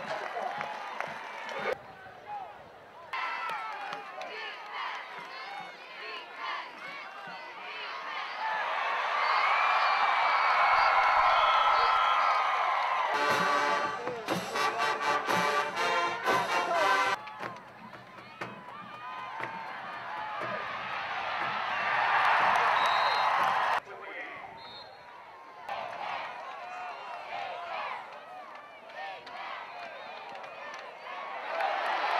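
Football stadium crowd cheering and shouting, swelling to loud cheers twice, with music and scattered voices mixed in. The sound changes abruptly several times, as if spliced.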